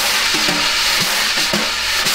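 Wire brushes playing a snare drum with a coated Remo head: a continuous swish of the bristles sweeping across the head, with light taps and accents scattered through it.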